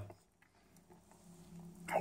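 Near silence in a pause between spoken sentences, with a faint low sound rising in the last half second before the talking starts again.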